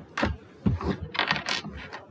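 A quick run of light clicks and clinks, like small hard objects being handled, most of them close together between about one and two seconds in.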